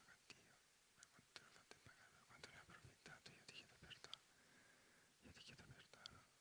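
Very faint whispering, with scattered soft hisses and small mouth clicks.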